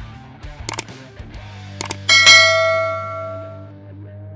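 Subscribe-button animation sound effects over soft background music: two quick mouse-click sounds about a second apart, then a bright notification-bell ding that rings out for about a second and a half.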